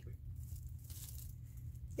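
A quiet pause: a low steady hum with faint rustling as a cake of acrylic yarn is handled and turned over in the hands.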